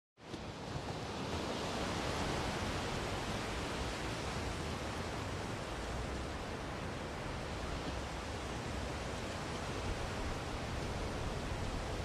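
Steady, even rushing noise of an outdoor ambience, starting suddenly just after the beginning and holding level throughout.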